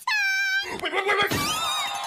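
A high, held cry with a clear pitch lasting about half a second, then a jumble of animal-like calls that slide up and down in pitch, fading out near the end.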